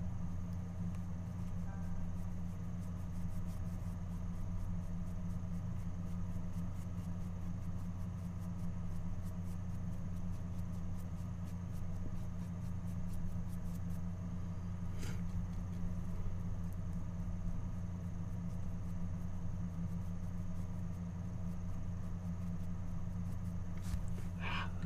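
Steady low hum of room background, with a single faint click about fifteen seconds in.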